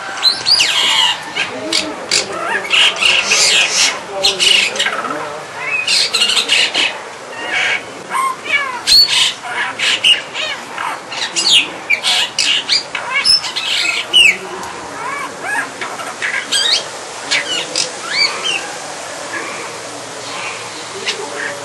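Brahminy starling singing a varied song of gliding whistles, chatter and harsh notes. The song is busiest through the first fifteen seconds and thins out near the end.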